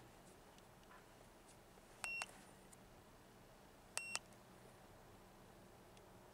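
Two short, high electronic beeps from a handheld OBD2 scan tool's keypad as its buttons are pressed to move through the menus, about two seconds apart.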